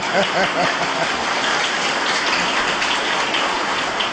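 An audience applauding, a dense, steady patter of clapping, with a voice heard briefly at the start.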